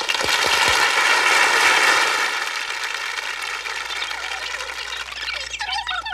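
Studio audience applauding and cheering, starting suddenly, loudest in the first two seconds, then slowly dying away.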